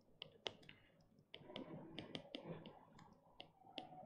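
Faint, irregular clicks of a stylus tapping and writing on a pen tablet, about a dozen light ticks spread over the few seconds, against near silence.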